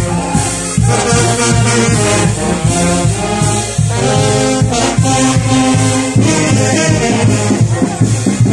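Brass band music: trombones and trumpets playing a melody in held notes over a steady bass line.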